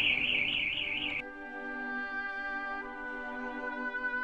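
Symphony orchestra playing: a high held note with vibrato breaks off suddenly about a second in, and a sustained chord of held notes follows, shifting once near the end.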